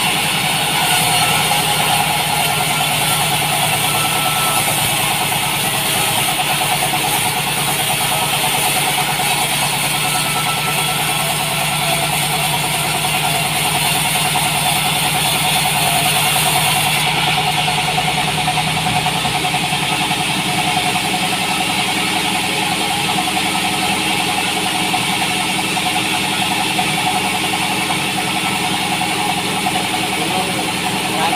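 Sawmill bandsaw running steadily while its blade cuts through a beam of salam wood. A high hiss from the cut stops about halfway through, and the machine keeps running.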